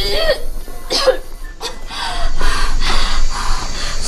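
A young woman coughing in several hard bursts, the longest and roughest through the second half, over background music.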